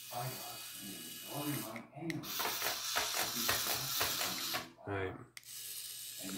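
Hexbug Spider remote-control toy's small electric motor whirring as it walks across a wooden tabletop, with its plastic legs ticking, stopping briefly about two seconds in and again near the end.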